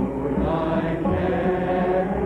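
A folk song sung with instrumental backing: held sung notes over a regular low beat, on an old recording with a dull, muffled top end.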